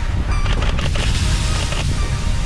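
Wind rushing over the microphone in a heavy low rumble, with rough scraping from the second half onward as a tandem skydiving pair slides in to land on gravel.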